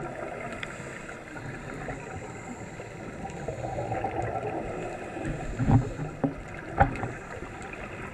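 Muffled underwater sound picked up through an action camera's waterproof housing: a steady rush of water noise that swells briefly midway, then a few dull thumps in the last few seconds.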